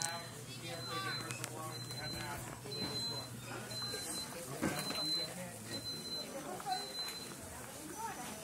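A high-pitched electronic alarm beeping steadily about once a second, each beep short and evenly spaced, with a murmur of voices behind it.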